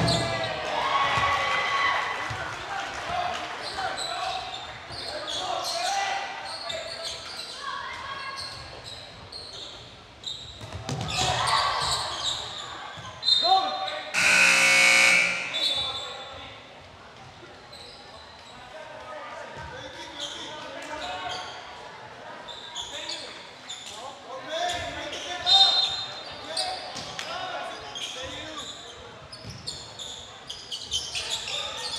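Basketball game play in a large echoing gym: a ball being dribbled, sneakers squeaking on the hardwood, and players and spectators calling out. About halfway through, a loud horn-like buzzer sounds for about a second and a half.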